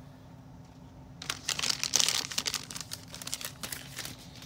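Packaging wrapper crinkling and rustling as it is handled, starting about a second in and loudest in the middle.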